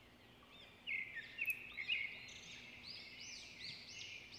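Small birds chirping in the background, a quick run of short high chirps starting about a second in and continuing throughout.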